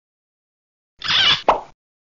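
A wine-cork pop sound effect: a brief hiss followed by a sharp pop, about a second in and lasting under a second.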